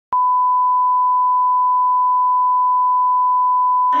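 Steady electronic test tone: one pure, unchanging beep that starts with a click just after the start and holds unbroken at even loudness until it stops near the end.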